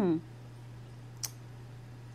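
A woman's short falling "hmm", then a pause filled by a steady low hum, with a single short click a little over a second in.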